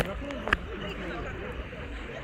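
Sea water moving against a camera held at the surface, a low steady rumble with a sharp click at the start and another about half a second in, under faint voices of people in the water.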